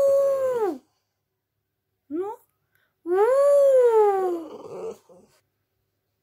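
French bulldog howling: a long howl that tapers off under a second in, a short rising whine about two seconds in, then a longer howl that rises and slides down in pitch.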